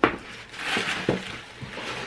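Tissue paper and a silky fabric dust bag rustling as they are handled and lifted out of a box, with a sharp tap right at the start and a small knock about a second in.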